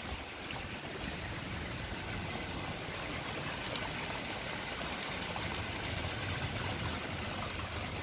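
Water pouring from a plastic inlet pipe into a concrete fish pond: a steady, unbroken splashing rush.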